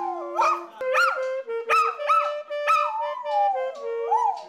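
A dog howling along to a saxophone: a run of short rising-and-falling howls over the saxophone's held notes, then one longer howl that falls away near the end. The dog is set off by the wind instrument and howls as if singing whenever it is played.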